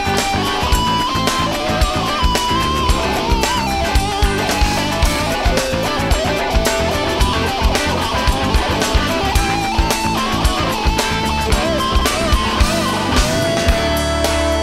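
Live rock band playing an instrumental passage: an electric lead guitar line with bent notes over steady drums and bass. The guitar settles on a long held note near the end.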